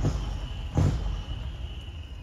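Diesel engine of a decorated art truck (dekotora) pulling away, a low rumble that fades, under a steady high-pitched whine. A short, loud burst of noise comes a little under a second in.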